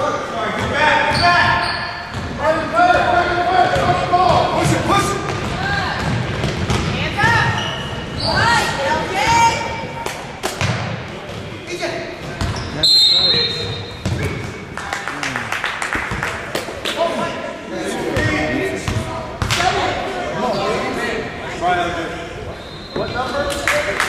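Basketball game in a large gym: a ball bouncing on the hardwood court, with players' and spectators' voices shouting over the play, all echoing in the hall.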